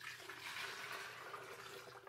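Water being poured from a pitcher into the reservoir of a Mr. Coffee iced tea maker: a steady splashing pour that tails off near the end.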